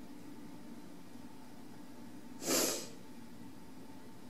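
A single short, sharp breath through the nose, a sniff or snort, about two and a half seconds in, over a steady low room hum.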